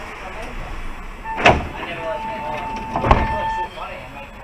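Mercedes-Benz Citaro G articulated bus slowing almost to a stop: two sharp knocks about a second and a half apart, and a steady high squeal held for about a second and a half between and through the second knock, over the running noise of the bus.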